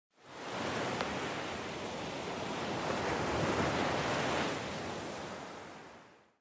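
A steady rushing hiss of noise, like surf or wind, fades in, swells a little past the middle and fades away, with one faint click about a second in.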